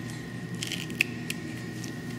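Pruning snips cutting through the body wall of an embalmed dog along the costal arch: a few short crunching snips, the sharpest about a second in.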